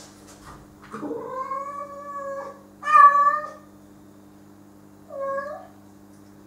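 Domestic cat meowing three times: a long drawn-out call, then a louder, shorter one, then a brief one near the end, over a steady low hum.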